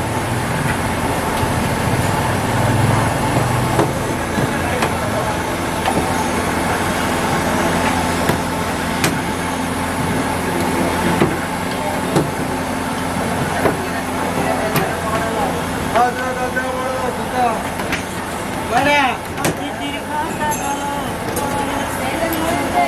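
Busy street background: running vehicle engines and traffic mixed with people's voices, steady throughout, with some voices or a horn standing out near the end.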